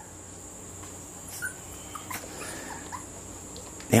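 Faint, short, high-pitched animal calls a few times, like a dog whimpering, over a steady thin high tone.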